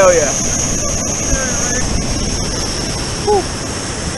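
Waterfall rushing steadily into a pool, with a short shout at the start and another brief voice call a little after three seconds in.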